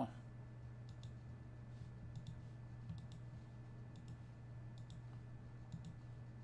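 Faint computer mouse button clicks, several in quick pairs, as rows are deleted one by one, over a low steady hum.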